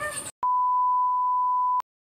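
An electronic bleep: one steady, pure high tone lasting about a second and a half, starting and stopping abruptly.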